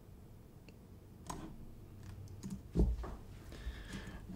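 Faint computer mouse clicks and light desk knocks, a handful of them starting about a second in, the loudest, with a dull thump, a little before three seconds.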